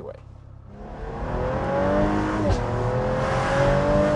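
The Ringbrothers' 1948 Cadillac coupe, running on ATS-V twin-turbo V6 running gear, accelerating onto the freeway. The engine note swells in after a quiet first second and climbs in pitch. It dips briefly about two and a half seconds in, as at an upshift, then climbs again over road noise.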